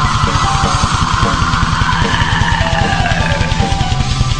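Raw black metal recording: fast, relentless drumming under a wall of distorted guitar, loud and unbroken.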